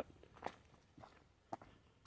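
Faint footsteps of a person walking: three soft steps about half a second apart.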